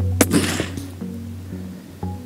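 A single shot from a moderated Tikka .25-06 rifle just after the start: a sharp crack with a short echoing tail, over background music.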